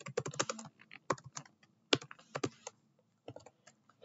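Typing on a computer keyboard: irregular bursts of key clicks broken by short pauses.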